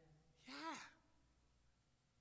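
A person's short, breathy sigh about half a second in, falling in pitch, in otherwise near silence.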